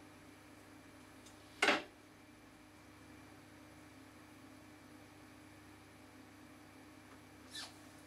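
Quiet room tone with a steady low hum, broken by one short, sharp noise a little under two seconds in, with a fainter one near the end.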